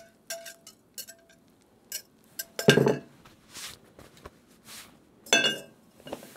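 A clear mixing jug clinks lightly against the rim of an enamelled cast-iron pan several times as the last of a thin batter is poured out. Two louder knocks follow, one about halfway through and one near the end.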